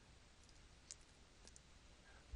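Near silence with a few faint clicks from the second second on, from a stylus tapping on a writing tablet as handwriting is added.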